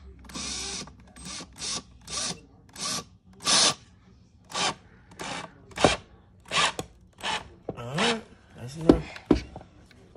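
Cordless power drill run in about a dozen short bursts, the trigger squeezed and let go each time.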